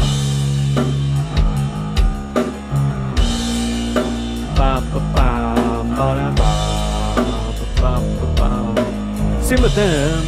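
Playback of a multitrack rock song in progress, with drum kit, bass and electric guitar, starting suddenly at full level and keeping a steady beat.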